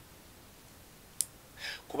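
A quiet pause with faint room tone, broken by a single sharp click about a second in, then a soft breath-like hiss just before speech resumes.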